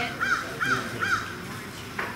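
A crow cawing four times in quick succession, each caw a short arched call.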